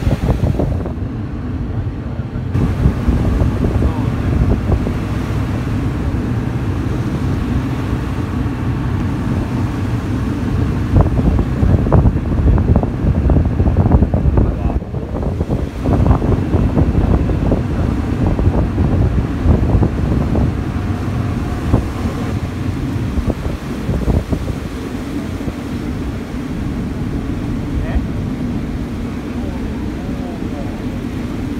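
Wind rumbling on the microphone on the open deck of a motor sightseeing boat, over the boat's engine and churning sea water. The gusts rise and fall and are loudest around the middle.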